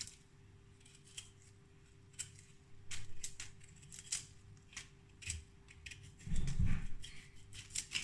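Kitchen knife paring the rough skin off a yam: a string of short, irregular scraping cuts, with a louder low bump a little over six seconds in.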